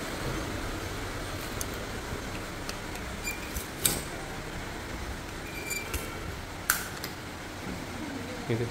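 Steady mechanical hum of room machinery, with a few sharp clicks scattered through it and two brief faint high tones.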